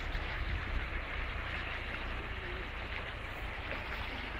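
Steady rushing of the Vistula's fast current in flood.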